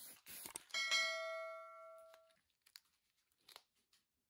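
A few short hisses of an aerosol spray-paint can, then, about 0.7 s in, a bell-like ding sound effect from a subscribe-button animation that rings out and fades over about a second and a half.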